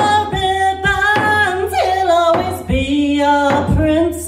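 A woman singing long, sliding held notes into a microphone, with a few low beats on a hand frame drum struck with a beater.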